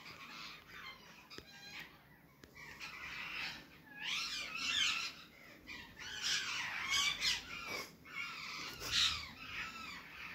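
Rose-ringed parakeets calling in several bouts of wavering, chattering squawks.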